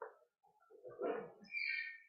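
Faint animal calls: a short call about a second in, then a higher-pitched, whining call near the end.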